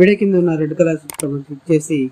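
A man's narrating voice, broken about halfway through by a sharp click sound effect from a subscribe-button animation.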